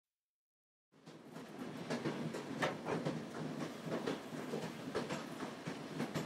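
Train running on rails: a steady rumble with a rhythmic clickety-clack of wheels over rail joints, fading in about a second in.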